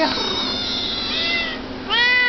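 A domestic cat meowing: one long, drawn-out, high meow that falls in pitch toward its end, the call of a talkative cat.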